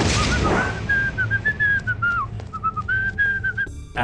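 A person whistling a short tune: a run of clear held notes with small slides that breaks off abruptly near the end. A brief rushing noise sounds at the very start.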